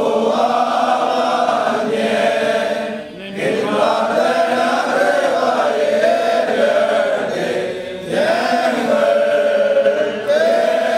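Orthodox clergy and worshippers chanting a liturgical hymn together in long, held phrases. The singing pauses briefly for breath about three seconds in and again about eight seconds in.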